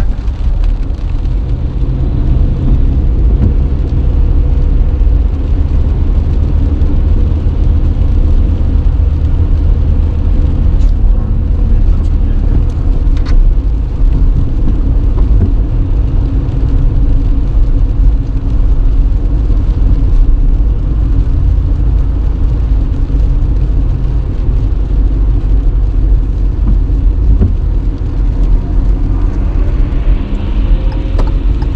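Steady low rumble of a car being driven, heard from inside the cabin: engine and tyre noise with a faint steady hum and a few faint ticks near the middle.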